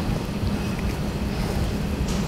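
Steady low room rumble with a constant hum, picked up through the talk's microphone; no speech.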